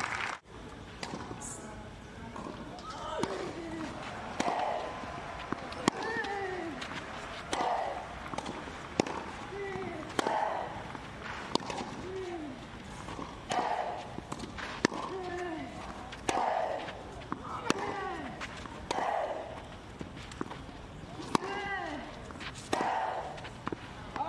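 Tennis rally on a clay court: ball strikes on the racquet strings about every second and a half, each with a player's short grunt that falls in pitch.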